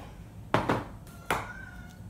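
Two knocks of ingredient containers being handled and set down on a hard surface, about half a second and a second and a quarter in. The second knock leaves a faint short ring.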